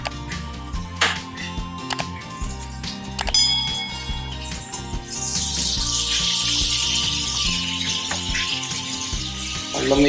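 A steel cup clinks a few times against steel pots, one clink ringing briefly, then water pours with a steady hiss into a pressure cooker of duck curry and potatoes. Background music plays throughout.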